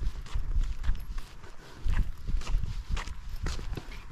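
Footsteps walking across a concrete path, an irregular run of short scuffing steps over a low, uneven rumble.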